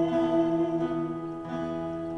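A small live worship band playing a slow song on acoustic guitar and keyboard, with a long note held.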